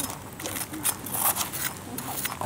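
Kitchen knife blade scraping the charred, burnt skin off whole grilled snakehead fish: a run of short, uneven, scratchy strokes, done gently.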